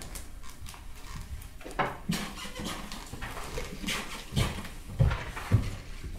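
Footsteps of two people walking away across a floor: a run of irregular soft thuds, the heaviest in the second half.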